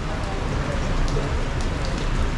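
Heavy rain falling steadily, a dense even hiss with scattered drop ticks over a low rumble.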